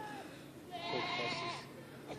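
Llama humming: a high, nasal, drawn-out call lasting about a second in the middle, after a fainter steady hum fades out near the start.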